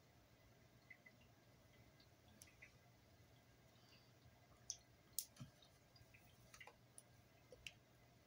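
Near silence with faint, scattered small clicks and taps from handling a makeup brush and a handheld mirror, a few sharper ones in the second half.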